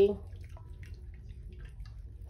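Lye solution being stirred with a plastic spatula in a glass measuring jug: faint, scattered clicks and liquid swishes against the glass, over a steady low rumble.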